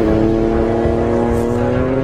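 A motorcycle engine pulling with its pitch rising slowly and steadily, over background music with a heavy beat. It cuts off abruptly just after the end.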